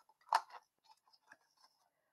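A short sharp click about a third of a second in, then faint rustling of cardstock being handled as a die-cut paper crane is separated from its thin metal cutting die.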